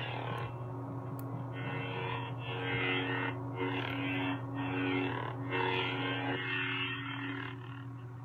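Lightsaber sound font played through a custom hilt's speaker by its Verso soundboard: a steady low idle hum, with a series of smooth swing swells that rise and fall as the hilt is moved.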